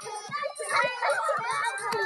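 Several young children's voices shouting and chattering over one another while playing.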